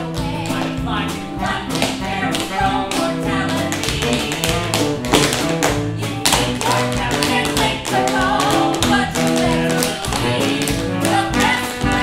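Tap dancing: metal taps on shoes striking the stage in quick, irregular strokes, several a second, over music with a steady bass line.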